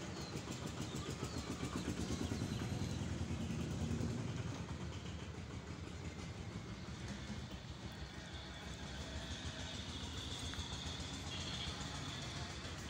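Low rumble of a motor vehicle engine running, swelling over the first four seconds and then fading a little. Faint high-pitched tones come in near the end.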